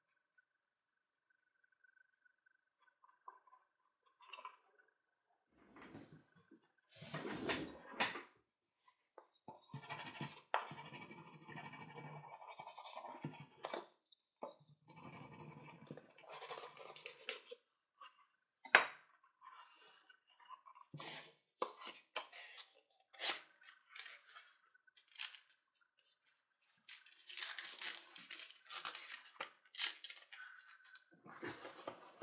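Hands handling a stitched leather phone holster and sliding an insert into it: leather rubbing and scraping, with scattered sharp taps and knocks, the loudest a little past halfway.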